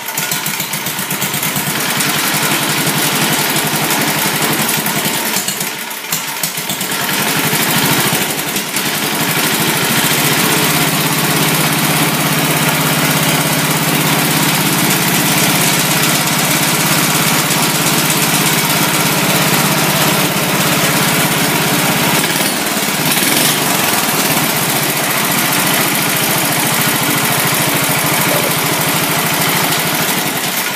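Small engine of a vintage Sears garden tractor running, just started after a carburetor repair: a new needle seat now keeps the float needle from sticking open and flooding fuel. The note dips briefly around six and eight seconds in, steadies about ten seconds in and shifts again near twenty-two seconds.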